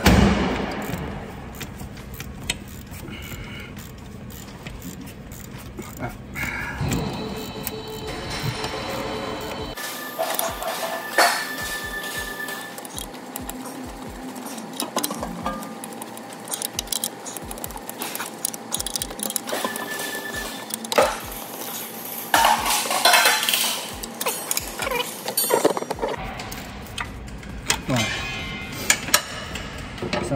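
Steel tools clinking, knocking and scraping against a truck's rear disc brake caliper as the piston is levered back to make room for new pads. There are irregular sharp metallic knocks, some with a brief ring.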